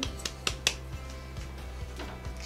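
Soft background music with a steady low hum, and a few light clicks in the first second as salt is tipped from a small ceramic ramekin into a glass mixing bowl.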